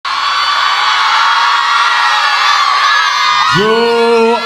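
A large crowd cheering, whooping and shouting, loud and continuous; about three and a half seconds in, a man's voice on the microphone starts speaking over it.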